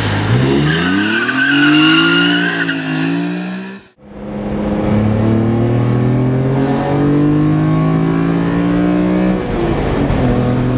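BMW E46 M3's inline-six, fitted with a CSL intake airbox, headers and a rasp-delete exhaust, pulling away hard with its pitch rising and a high squeal over it. After a sudden cut about four seconds in, the same engine is heard from inside the cabin, accelerating under load with its pitch climbing steadily, then dropping near the end.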